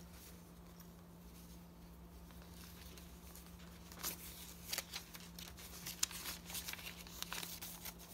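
Paper rustling and crinkling as hands handle the pages, tags and pockets of a handmade paper journal. It is faint at first, with scattered soft rustles and clicks from about halfway through as the page is turned. A faint steady hum runs underneath.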